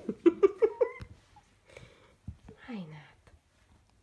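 A woman laughing in a quick run of short bursts through the first second. Quieter scuffling follows, then one short falling cry near the end.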